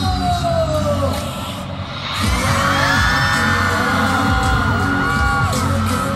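Pop dance track playing over the venue loudspeakers for a dance challenge, its heavy beat coming in about two seconds in, with fans screaming over it.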